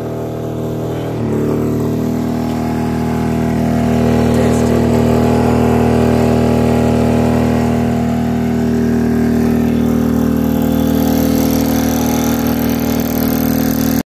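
Small petrol digital inverter generator running under a full load of about 1900 W. About a second in, its pitch steps up as the engine speeds up, and the sound then settles into a steady hum.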